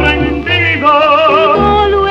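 Music from a 1957 bolero 78 rpm record: an orchestra with low bass notes under long, wavering melody notes.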